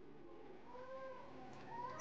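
A faint, single short call, about a second in, rising and then falling in pitch, like an animal's meow, heard over quiet room tone.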